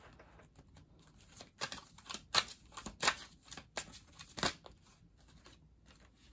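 A deck of oracle cards being shuffled by hand: soft rustling with a string of sharp card snaps about every three-quarters of a second through the middle, thinning out near the end.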